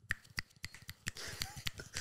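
Fingers snapping in a scattered, irregular run of sharp snaps, poetry-reading style, as approval of a quote just read out.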